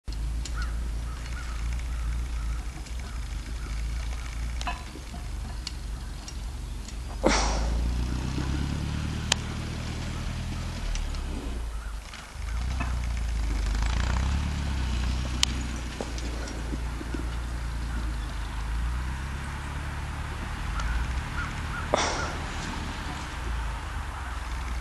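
Massey Ferguson 35 tractor engine running steadily while plowing snow, its pitch rising and falling as the load changes. A sharp, loud noise cuts in about seven seconds in and again near the end.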